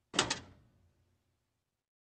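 Edited-in sound effect for a title card: a sudden burst with two quick sharp hits, dying away within about a second, then dead silence.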